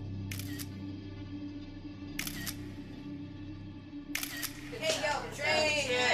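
Film score: a low, steady drone of held tones, cut by three short, sharp clicks about two seconds apart. Voices come in near the end and grow louder.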